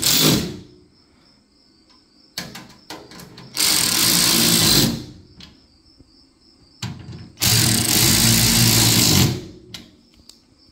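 WorkPro 3/8-inch drive cordless ratchet running in bursts, driving screws into a sheet-metal tool chest: a burst ending just after the start, a run of just over a second about four seconds in, and a longer run of about two seconds near eight seconds. Short clicks fall between the runs.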